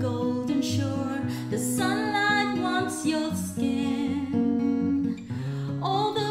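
Martin 000-MMV acoustic guitar playing a song accompaniment while a woman sings over it, her held notes wavering.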